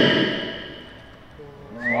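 The echo of a man's shouted count through a PA dying away in a large gym hall, falling to a lull about a second in. Near the end, voices in the crowd start up again with a 'wow'.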